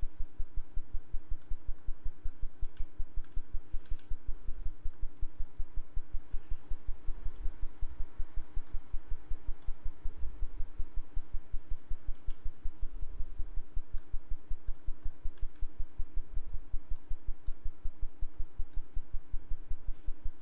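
A low, even, rapidly pulsing hum, several pulses a second, with faint steady tones over it and a few faint clicks.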